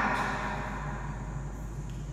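Chalk writing on a blackboard, scraping in short strokes, over a steady low electrical hum. A man's voice trails off right at the start.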